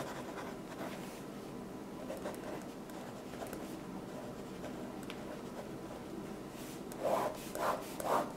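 Pen scratching across lined notebook paper as words are written. The strokes are faint, with a few louder ones near the end.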